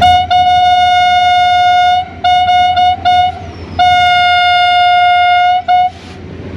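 Horn of an EMD HGMU-30 diesel-electric locomotive, heard from its cab: a single steady high note sounded in a pattern of blasts. A brief toot and a long blast of nearly two seconds, then a few short toots, another long blast and a final short toot.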